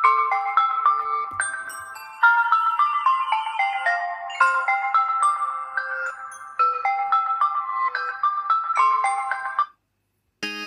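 Samsung Galaxy phone ringing for an incoming WhatsApp voice call: a repeating melodic ringtone of short bell-like notes, which cuts off shortly before the end.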